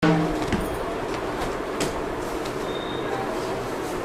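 Soft rustling and a few light taps of a folded cotton saree being handled and spread out on a shop counter, over a steady background hum.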